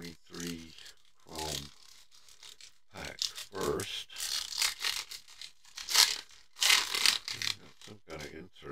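Foil wrapper of a Topps Chrome baseball card pack crinkling and tearing open by hand, a run of sharp crackles in the second half, loudest near the end. Earlier there are a few short vocal sounds.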